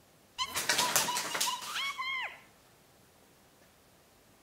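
A house of Uno playing cards collapsing onto a wooden table: a sudden quick clatter of cards falling, starting about half a second in and lasting about a second. Over it runs a high squeaky tone that jumps up in pitch and then slides down and stops a little past two seconds in.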